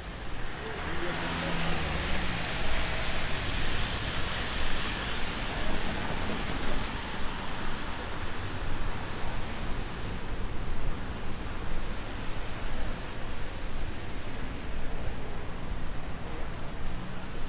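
Road traffic on a wet city street: tyres hissing on the wet asphalt with engines under it. The hiss swells in the first couple of seconds and eases after about ten seconds.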